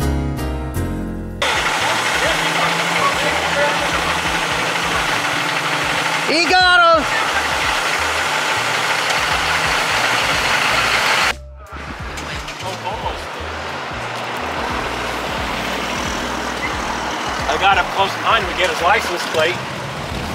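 Loaded log trucks driving past, with loud engine rumble and road noise and a brief rising-then-falling pitched sound about six and a half seconds in. Before it there is a second of piano music, and after a sudden cut a quieter truck rumble with voices near the end.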